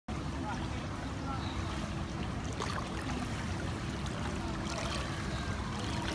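Steady low rumble of wind on the microphone, with faint distant voices.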